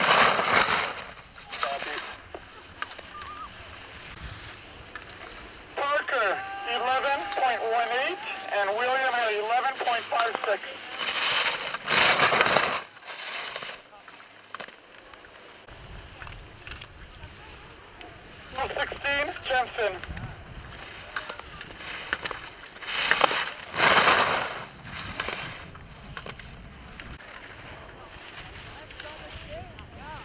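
Ski edges scraping and hissing on snow as slalom racers carve past, heard as a few short loud swishes: one at the start, one about twelve seconds in, and one around twenty-four seconds in.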